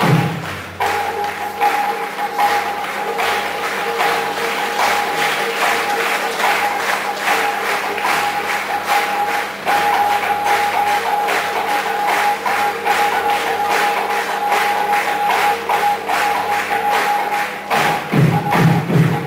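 Kirtan music without singing: a steady held drone note with a regular percussion beat of about two to three strikes a second.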